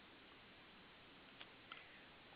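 Near silence with faint recording hiss, broken near the end by two faint clicks about a third of a second apart, as the presentation slide is advanced.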